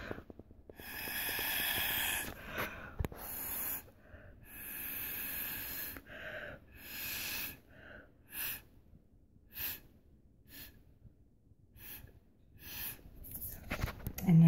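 Breath blown through a straw onto wet alcohol ink to push it across the glass. There are three long breathy blows in the first half, then a run of short puffs about once a second.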